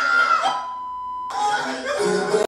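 Excited voices, with a long high held shout at the start. A steady high beep-like tone follows for under a second, and then the voices return.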